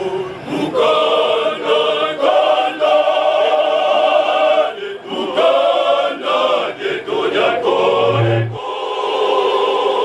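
Men's choir singing together, holding long notes broken by short pauses between phrases.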